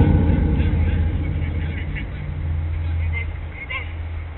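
Loud low rumble of wind buffeting the microphone. It starts suddenly and fades gradually, with faint distant shouts from players over it.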